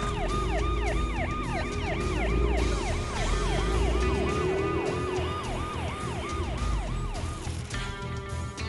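Police car siren in a fast yelp, its pitch sweeping up and down about three times a second, over a low vehicle rumble. The siren fades away near the end.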